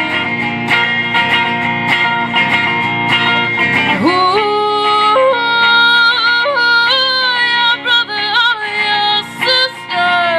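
A woman singing live over her own strummed electric guitar, played through an amplifier. Her voice holds long notes and sweeps upward in a big slide about four seconds in.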